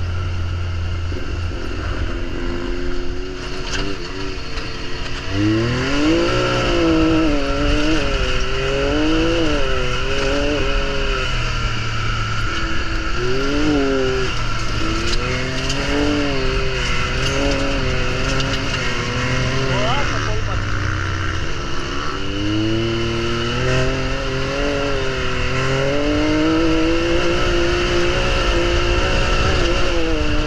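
Can-Am Maverick X3 side-by-side's turbocharged three-cylinder engine under way on a gravel track, its pitch rising and falling again and again as the throttle opens and closes, over a steady rumble of tyres on gravel.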